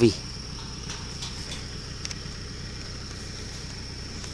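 Insects calling outdoors: one steady, unbroken high-pitched note, over a low rumble with a couple of faint clicks.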